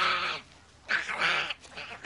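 A young boy screeching wildly, two harsh cries of about half a second each, in a candy-fuelled frenzy.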